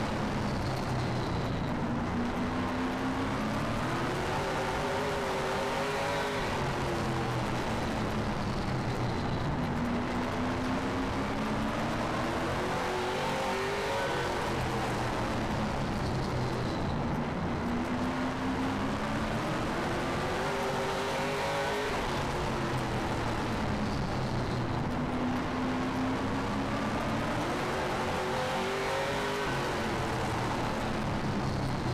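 Late model stock car's V8 racing on a short oval, heard from the in-car camera: the engine note climbs down each straight and drops as the driver lifts into each turn, about every seven seconds.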